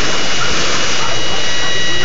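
Water splashing and falling back into a swimming pool after a person jumps in, a steady loud rush of spray.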